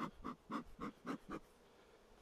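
Bee smoker's bellows squeezed in a quick run of about six short puffs, about four a second, stopping about a second and a half in, as smoke is puffed into the hive entrance to calm the bees before the boxes are opened.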